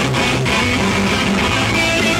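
Heavy metal band playing live and loud, with electric guitar to the fore over bass.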